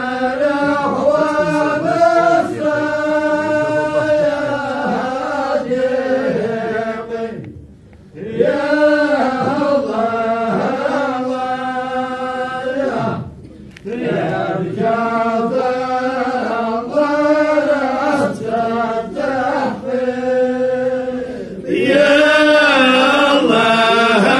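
Unaccompanied voices chanting in long, drawn-out melodic phrases that glide up and down, broken by short pauses for breath about a third of the way in and just past halfway. It grows louder near the end.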